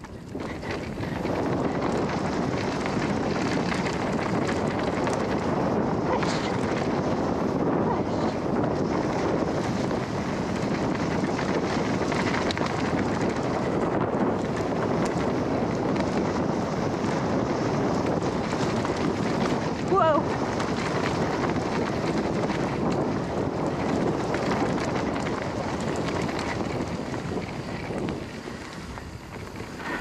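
Steady wind noise buffeting a chest-mounted action camera's microphone, mixed with the tyre roar and rattle of a mountain bike descending a dirt forest trail. It gets a little quieter near the end.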